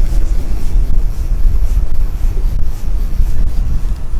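Strong wind buffeting the microphone on a boat in rough seas: a loud, steady low rumble.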